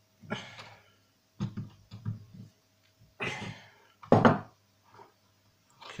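Handling noises as thin pure-tin sheet pieces are pressed flat and moved about by hand on a tabletop: a few separate knocks and rubs, the loudest a thump about four seconds in.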